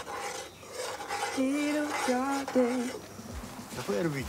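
A metal spoon scraping and stirring in a cooking pot, then a woman's voice singing three short held notes, about halfway through.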